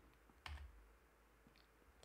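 Near silence, room tone, broken by one short soft click about half a second in.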